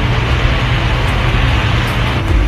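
Steady hiss and low hum, the background noise of an old film soundtrack, in a pause in a man's speech.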